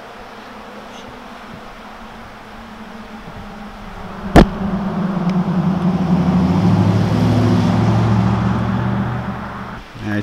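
A car driving past on the road, its engine hum and tyre noise building, peaking and fading away. A single sharp click about four seconds in.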